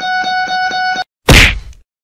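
Plucked guitar music that cuts off about a second in, followed by a single loud whack that dies away within half a second.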